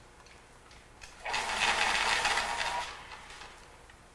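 A short burst of scratchy, whirring noise starting just over a second in, lasting about a second and a half, then fading away.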